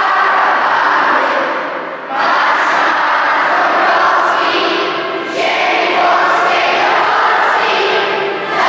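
A group of children's voices singing together as a choir, in long phrases with short breaks between them.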